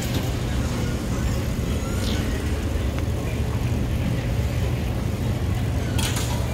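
Baggage claim hall ambience: a steady low hum and rumble from running baggage carousels and building machinery, with a few faint clicks.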